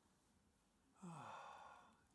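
A person sighs once, about a second in: a breathy out-breath with a voiced tone that falls in pitch, lasting about a second and fading away.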